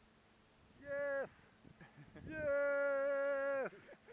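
A man's voice: a short vocal call about a second in, then a long held note of over a second, steady in pitch and bending down at its end, like a drawn-out sung 'aaah'.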